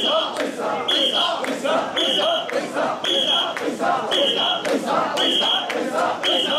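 Crowd of mikoshi bearers chanting in a steady rhythm, about one shout a second, as they carry a portable shrine. A short high whistle blast sounds on each beat, keeping time.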